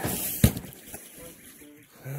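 A cardboard box of siding sliding and landing with a short scraping rush and then one sharp thud about half a second in, as it is heaved up onto a stack.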